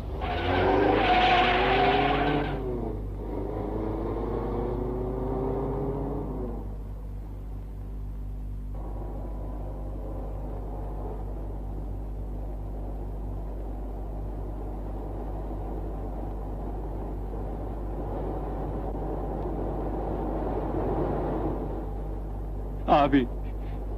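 A car speeding off: the engine revs up hard twice in the first six seconds, then runs on at speed with steady engine and road noise.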